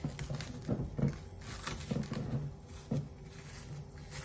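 Plastic cling film crinkling and rustling as hands pull on the lining to lift a frozen ice cream block out of a glass baking dish, with a few irregular light knocks.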